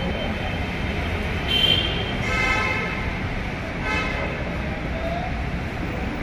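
Street traffic with vehicle horns honking over a steady low rumble: a short high beep about one and a half seconds in, a longer horn blast right after it, and another short honk about four seconds in.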